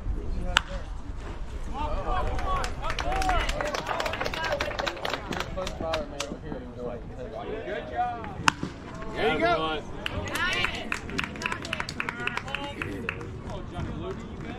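Spectators' voices shouting and calling at a baseball game, with a sharp crack of a bat hitting the ball about half a second in and another about eight and a half seconds in.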